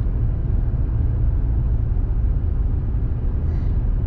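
Steady low rumble of a car driving along a town street, heard from inside the cabin: road and engine noise.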